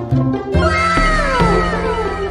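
Background music with a steady bass line. Over it, about half a second in, a long pitched sound effect begins and glides downward for about a second and a half.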